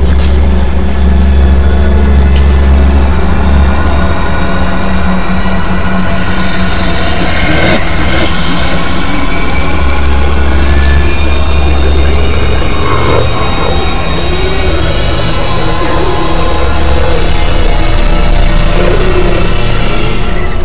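Loud film soundtrack music with deep bass notes held for several seconds at a time under sustained higher tones.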